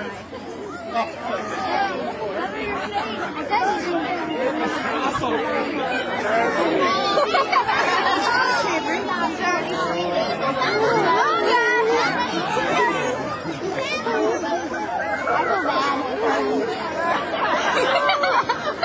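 A crowd of people talking over one another in steady, overlapping chatter, with no single voice standing out.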